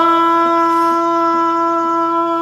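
A woman's voice holding one long, steady sung note in a Northwest Vietnam Thái folk song. The voice steps up slightly into the note at the start and then holds it without wavering.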